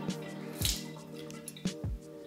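A few drops of water dripping off a just-soaked shaving brush as it is lifted out of its water, over quiet background music.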